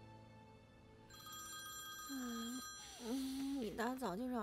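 A mobile phone ringtone starts about a second in, a steady electronic ring. Near the end a sleepy voice mumbles over it.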